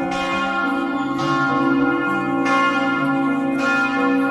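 Church bells ringing in a slow sequence, a new stroke about every second and a quarter, each at a different pitch and left to ring on over the last.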